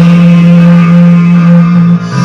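A man singing one long, steady held note into a karaoke microphone over the karaoke backing track.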